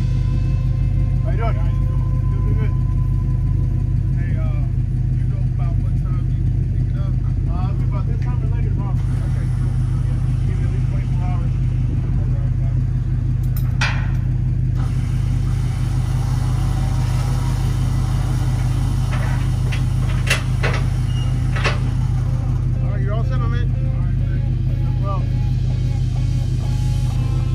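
Truck engine idling steadily with a deep, even hum, with a few sharp clicks partway through.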